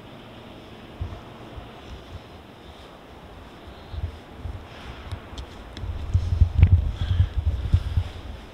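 Low buffeting rumble of wind and handling noise on the camera's microphone as the camera is moved. It starts about a second in and grows much stronger near the end, with a few faint clicks in between.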